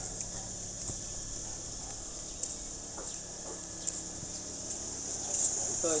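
Steady high-pitched insect trilling over the low, even hum of an idling vehicle engine, with a few faint light clicks.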